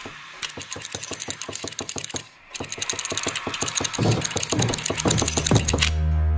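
Rapid, even ticking, about eight ticks a second, that thickens and grows louder, with a brief break about two and a half seconds in and a low drone swelling beneath it over the last two seconds: a film sound-design build-up.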